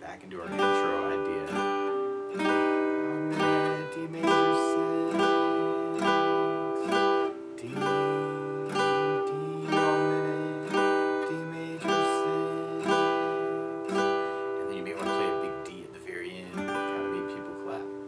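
Acoustic guitar, capoed at the fifth fret, strummed in a steady rhythm through the song's intro/verse chords, the bass note shifting every few seconds.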